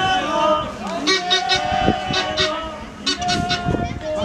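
Spectators shouting at a children's football match: several voices overlap in long, high-pitched calls, with a few short sharp sounds among them.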